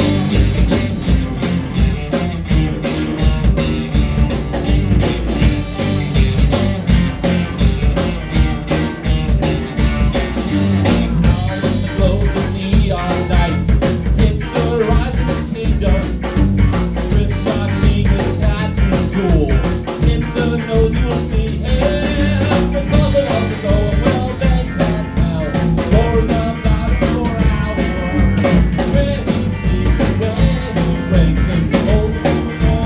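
A live rock band playing at full volume: two electric guitars, an upright electric bass and a drum kit keeping a steady, driving beat.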